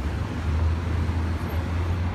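City street traffic: a steady low rumble from passing road vehicles.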